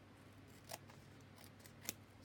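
Scissors snipping card and paper: two crisp snips about a second apart, with a few faint ticks between them, trimming the white card edges from a paper tag. A faint steady hum lies underneath.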